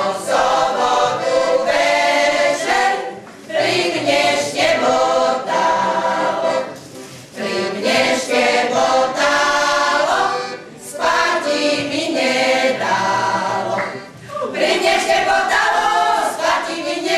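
A group of older women singing a Slovak folk song together, in phrases of about three to four seconds with short breaks between them.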